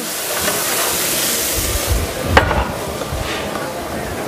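Head-on shrimp sizzling in a very hot oiled pan as Southern Comfort is flambéed over them, a steady hiss that eases off about halfway. A single sharp knock comes a little after two seconds.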